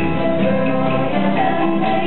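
A parish schola's hymn: a small church choir singing with guitar accompaniment, in steady held notes.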